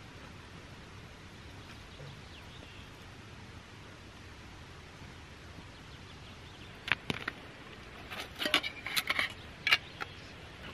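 Faint steady trickle of a shallow stony brook. From about seven seconds in, a run of sharp metallic clicks and clinks as a camping gas canister, its clip-on stand and the stove gear are handled and fitted together.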